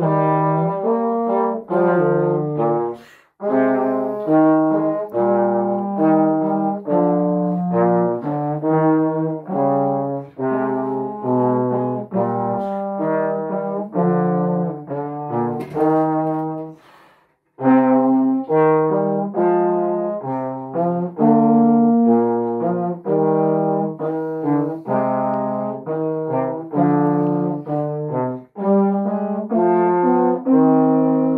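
Two trombones playing a duet, a melody of separate notes. The playing breaks off briefly twice, about three seconds in and again around seventeen seconds.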